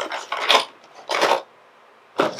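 A cardboard Funko Pop box with a plastic window being turned and handled, rubbing and scraping in the hands in three short scuffs.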